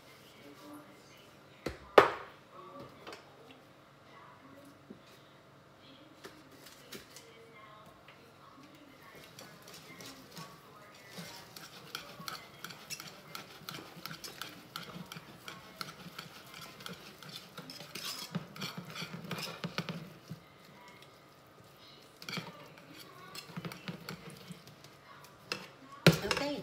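A wire whisk stirring mashed potatoes in a saucepan, with a quick run of light scrapes and taps against the pan through the second half. A single sharp knock about two seconds in is the loudest sound.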